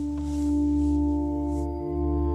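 Ambient background music: several steady, held tones over a low drone, with no beat.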